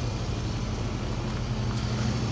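A 2010 Scion tC's 2.4-litre four-cylinder engine idling with a steady low hum.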